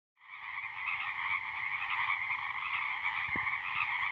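A dense chorus of frogs calling together, fading in at the start and then holding steady.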